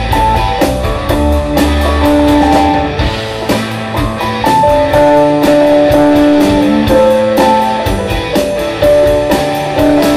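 Rock band playing an instrumental passage with no singing: guitar and held melodic lead notes over drums and bass. The heavy low bass drops away about three seconds in.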